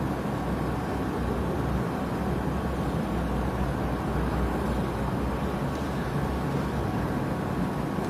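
Steady background noise: a low rumble with a hiss and a faint steady hum.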